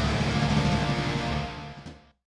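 Live rock band playing on, with electric guitar, the sound fading out steadily and dropping to silence near the end.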